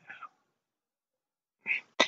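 Near silence in a pause between spoken sentences, with a faint breath at the start and a short intake of breath near the end, just before the voice returns.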